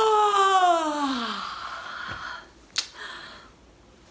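A woman's big, drawn-out yawn: one long vocal note sliding steadily down in pitch, trailing off into a breathy sigh. A single sharp click follows a little before the end.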